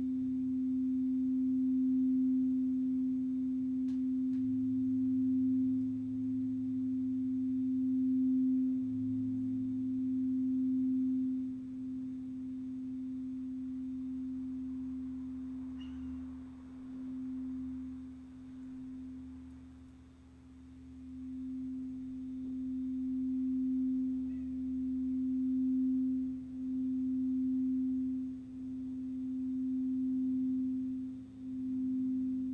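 A singing bowl rubbed around its rim with a mallet, giving one steady, nearly pure low tone that pulses slowly in loudness. The tone dips briefly about twenty seconds in, then swells again.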